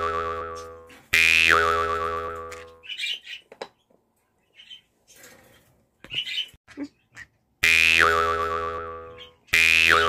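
Cartoon 'boing' spring sound effect (biyoyon): one is already fading at the start, then three more come, one about a second in and two near the end. Each starts suddenly, drops in pitch into a quick wobble and fades over about two seconds. In the quieter middle stretch there are a few short chirps from a green-cheeked conure.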